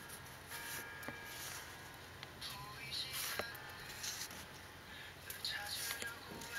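Paper photocards rustling and sliding against one another as they are shuffled by hand, in short bursts about three seconds in and again near the end, with a light tick midway.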